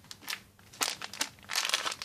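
A clear plastic bag crinkling as it is handled, in several short bursts with the longest near the end.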